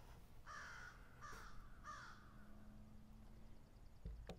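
A crow cawing faintly three times in quick succession, each caw short and falling slightly in pitch.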